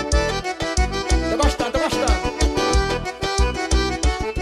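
Forró pisadinha band music: an accordion lead playing over a heavy, regular bass-drum beat, with some sliding notes near the middle.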